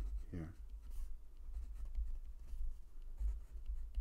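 Pen scratching on paper, writing out the entries of a matrix in short strokes, with a low steady hum underneath.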